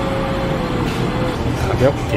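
Steady low rumble of room noise in a busy restaurant, with a single faint held tone that sags slightly and fades out about a second and a half in. A voice says "okay" near the end.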